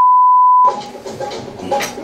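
A steady high-pitched censor bleep, a single pure tone, that cuts off less than a second in. Loud music from the party video follows, with a sharp hit near the end.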